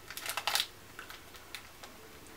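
Paper-and-foil snack packet crinkling as it is handled, a quick run of dry crackles in the first half second, then only a few faint ticks.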